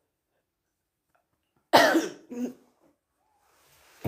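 A woman coughing: one hard cough a little under two seconds in, followed by a shorter, weaker one.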